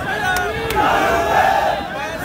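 A large crowd shouting together, many voices overlapping loudly without a break.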